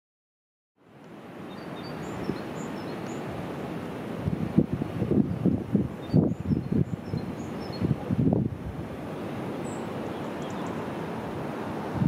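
Outdoor wind buffeting a camera's built-in microphone: a steady rush that starts about a second in, with gusty low rumbles through the middle.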